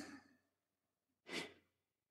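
Near silence, broken by one short breath out from a person about a second and a half in.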